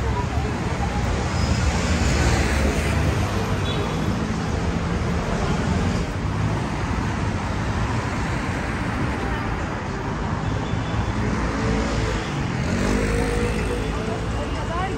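Steady road-traffic noise from a busy city street, with passers-by talking in the background. Near the end a pitched sound rises in pitch.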